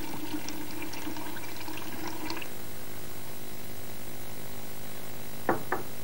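Dilute sulfuric acid trickling from a glass bottle into a tall glass cylinder for the first two seconds or so, over a steady background hum. Near the end come two short knocks as the bottle is set down on the bench.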